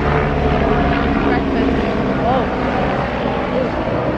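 Road traffic close by: a motor vehicle's engine running as it passes on the street, a steady low rumble, with faint voices behind it.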